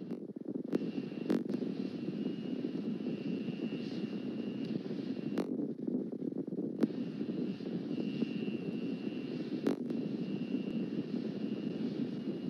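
A steady low rumbling noise, with a faint thin high whine that comes and goes and about six sharp clicks scattered through it.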